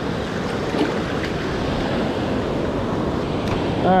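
Ocean surf washing in and out over the shallows at the water's edge, a steady rushing hiss with a few small splashes.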